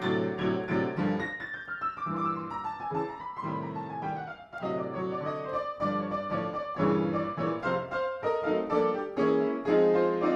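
Solo piano playing: repeated chords under a melody line that steps downward over a few seconds, then more chords.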